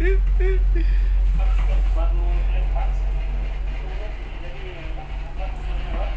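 A tugboat's diesel engines running with a deep, steady drone while the tug pulls hard on its towline, easing a little about five seconds in. Faint voices are heard over it.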